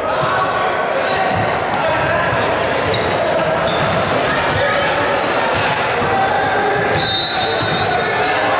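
Gym noise during a volleyball rally: many overlapping voices of players and onlookers echoing in the hall, with sharp knocks of the ball being hit.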